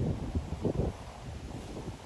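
Wind buffeting the microphone in gusts, a low irregular rumble that is strongest in the first second and eases after.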